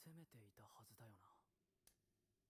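Faint male voice speaking Japanese briefly in the first second and a half: anime dialogue playing at low volume. A single click near the end.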